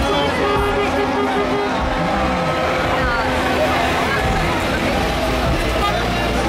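Vehicles, among them a Citroën van, driving past close by, mixed with music from loudspeakers and voices from the crowd.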